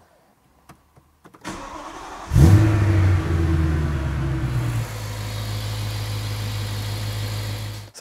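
BMW S65 4.0-litre V8 cranking on the starter for about a second, catching about two and a half seconds in with a flare of revs, then dropping to a steady idle about five seconds in. It is the first start after new injectors and an in-line fuel filter have been fitted, with the fuel system already primed.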